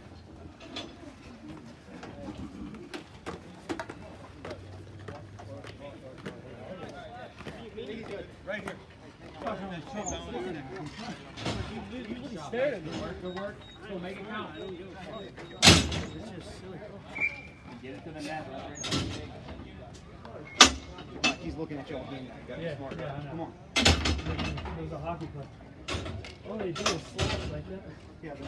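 Indistinct voices of players around an outdoor ball hockey rink, with a handful of sharp knocks from sticks and ball on the plastic court and dasher boards, the loudest about halfway through and a few more in the last seconds.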